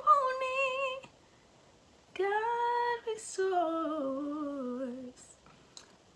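A woman singing a worship song solo and unaccompanied, through video-call audio: a held note, a pause of about a second, then another held note and a slowly falling run. A short breath comes near the end.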